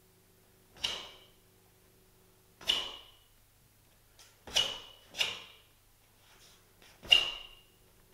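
Sharp cracks of a taekwondo dobok (uniform) snapping with the strikes and blocks of the Do-San pattern: five in all, irregularly spaced, with two close together a little past halfway and the loudest near the end, each with a brief room echo.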